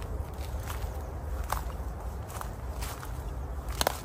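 Footsteps through dry fallen leaves and twigs on a woodland floor: scattered light crunches, with one sharper crack near the end, over a steady low rumble.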